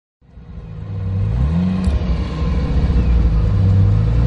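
Jaguar E-Type Series 3 V12 engine accelerating, heard from inside the car as it drives. The sound fades in, and the engine note climbs, falls back near two seconds in, then climbs steadily again.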